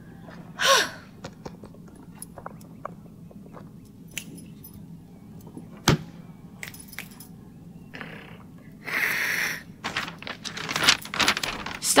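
A gasp, then the scattered small clicks, taps and knocks of a camera being handled and shaken, with one sharp knock about six seconds in and two short rushing noises near the end.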